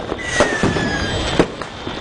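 New Year fireworks going off: sharp bangs at the start, about half a second in and about a second and a half in, over a continuous crackle, with a whistle that falls slowly in pitch in the first second.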